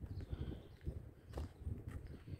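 Footsteps of someone walking on a concrete path, a few sharp steps over a low steady rumble.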